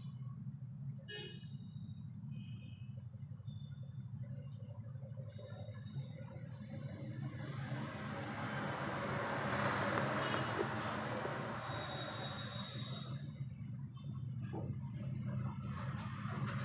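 Traffic going by: a vehicle passes, its noise swelling to a peak about ten seconds in and then fading, over a steady low hum. A few short high beeps sound in the first seconds, and a held high tone comes near the end.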